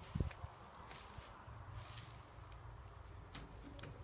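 A soft thump and faint handling clicks, then near the end a single brief, high-pitched metallic click or squeak as the lever handle of a locked metal door is tried.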